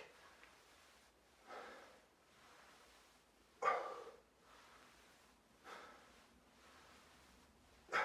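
A man's short, forceful exhalations, one about every two seconds, timed to dead bug reps on a floor mat.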